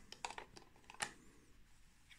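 Faint small clicks and light metal scraping of a screw-mount lens being threaded onto a Leica II camera body, with one sharper click about a second in.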